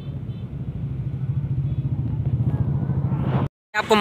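A steady low rumble that rises in pitch just before it cuts off abruptly at a brief silent gap about three and a half seconds in.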